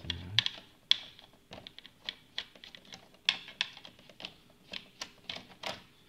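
Screwdriver undoing the terminal screws on the back of a double wall socket and the copper wires being pulled free: irregular light clicks and ticks of metal and plastic, a few a second.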